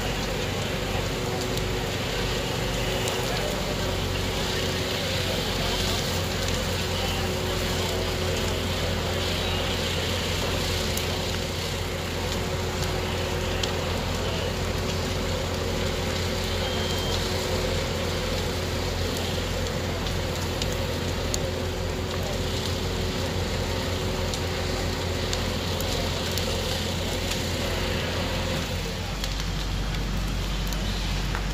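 A house fully involved in fire, burning over the steady running of a fire engine's motor and pump, one unbroken mix of fire noise and a constant low engine hum.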